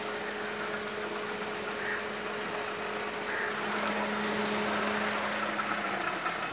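Car engine idling in neutral with a steady hum, growing slightly louder for a moment past the middle.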